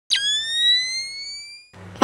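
A single electronic tone that drops steeply at its start, then glides slowly upward while fading out over about a second and a half, like an intro sound effect. A low steady hum comes in near the end.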